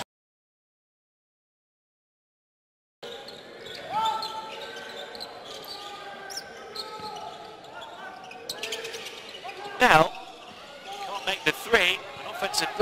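Dead silence for about three seconds, then the sound of a basketball game in a large indoor hall: the ball bouncing on the court over arena ambience, with one loud sharp sound about ten seconds in.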